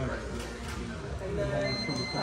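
Men's voices talking, with background chatter in a large room. A faint, high, steady tone comes in near the end.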